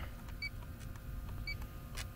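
Inficon D-TEK Stratus refrigerant leak detector giving short, high beeps about a second apart, twice, at the slow rate that goes with a low reading.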